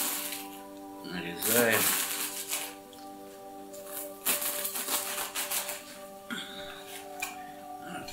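A knife slicing through a head of Napa cabbage, with crisp crunching cuts in a few irregular runs.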